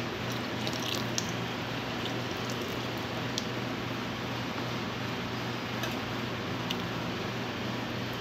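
A pot of canjica (hominy corn) in caramel and milk boiling on the stove: a steady bubbling with a few small scattered pops.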